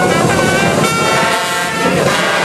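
Marching band playing brass and drums. A held brass chord breaks off at the start, drums carry on underneath, and a new brass chord comes in about a second in.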